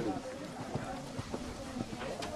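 Horse hoofbeats on the arena ground, a few irregular thuds, with voices in the background.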